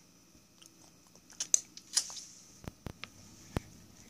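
A baby's wet mouth smacks and lip clicks while eating from a spoon, a quick cluster near the middle, followed by a few short, sharp knocks.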